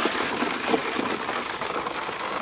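Water from a garden hose pouring steadily into a bucket of ice and water.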